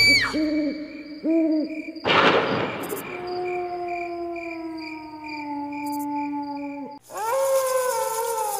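Cartoon night-time sound effects: an owl hooting three short times, a whoosh about two seconds in, then a long slowly falling call over crickets chirping about twice a second. A wolf howl rises near the end.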